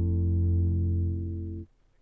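A live band's held chord on bass and electric guitar, a deep bass note with steady guitar tones above it, slowly fading. It cuts off abruptly near the end into near silence.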